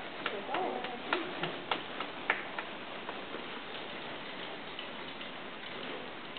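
Steady hiss of background noise with a string of light, irregular clicks and taps during the first two or three seconds.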